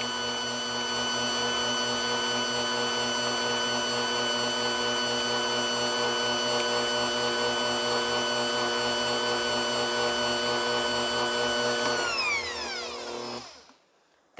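400-watt Bosch Compact Kitchen Machine running steadily as it creams butter and sugar. Near the end it is switched off and its whine falls in pitch as the motor winds down to a stop.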